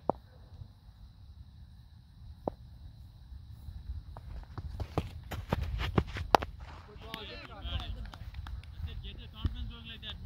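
A cricket bowler's run-up footsteps thudding on the turf, closer and quicker, ending in a sharp thud at the delivery stride. Wind rumbles on the microphone throughout, and people's voices follow the delivery.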